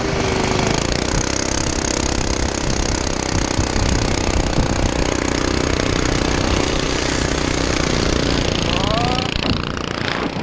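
Small engine of a 212cc-class motorized bike running hard at speed, a rapid, steady buzzing, with wind and road noise rushing over the mounted camera's microphone.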